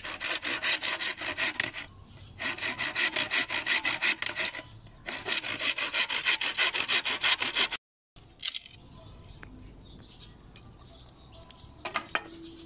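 Hand saw cutting through a bamboo pole at about six strokes a second, in three bursts with short pauses between them. The sawing stops abruptly about two-thirds of the way in, leaving faint background sound and a single knock near the end.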